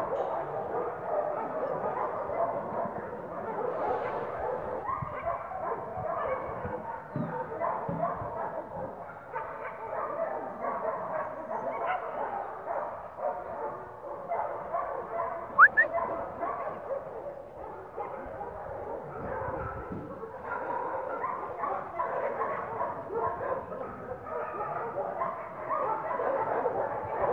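Many dogs barking and yipping at once, a steady dense chorus without pause, with one brief sharp high sound about two-thirds of the way through.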